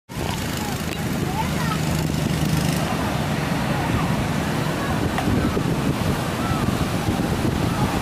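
Heavy surf breaking on a beach, with steady wind buffeting the microphone. Faint voices call out now and then over the surf.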